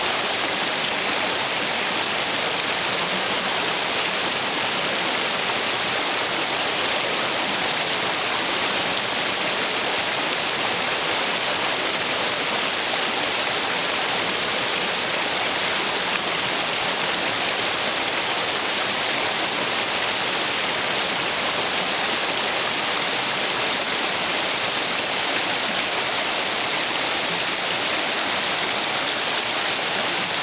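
Shallow rocky creek rushing over stones in small cascades, a steady, unbroken rush of water.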